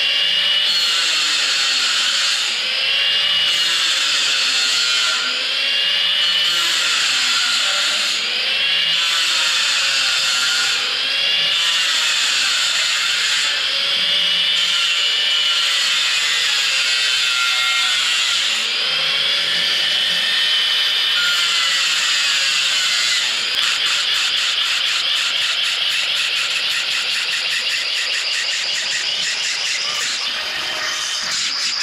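Power tool working metal, its pitch rising and falling in humps about every two seconds. About three-quarters of the way through the sound changes to a fast, even pulsing.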